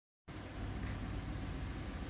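Steady low hum and hiss of background room noise in a large shop building, starting a moment in.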